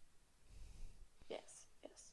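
Near silence with a faint low hum, then brief, faint fragments of speech about a second and a half in.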